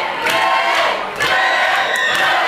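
Fight crowd of spectators shouting and cheering, many voices at once, with a brief dip about a second in.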